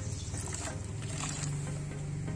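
Rice-washing water poured in a thin stream from one plastic bottle into the neck of another, over a steady low hum.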